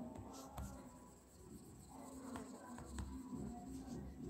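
Faint taps and scratching of a stylus on a tablet screen as handwritten working is erased, over a low steady hum.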